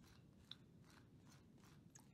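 Very faint, repeated scraping strokes of a knife spreading butter on a slice of bread, about two or three a second, with a small click about half a second in.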